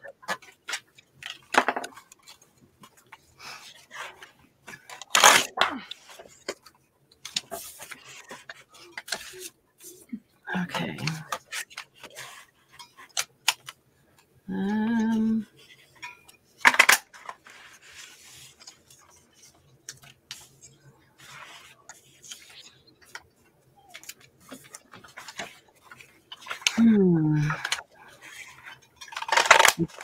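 Scattered clicks, taps and rustles of paper and craft tools being handled on a work table, with a few sharper clicks. Brief voice sounds come in between.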